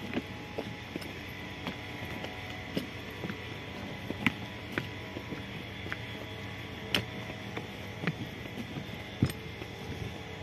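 Footsteps on a temporary walkway of rubber ground-protection mats: scattered light taps and clicks, roughly one a second, over a steady low hum.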